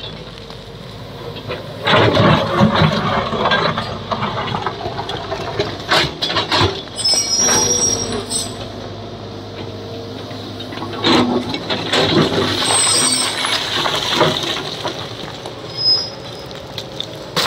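Tracked JCB excavator's diesel engine running while its steel bucket digs into and scrapes a rocky slope, with rock and rubble clattering down in several loud bursts. Two brief high metallic squeals come through, about halfway and again near the end.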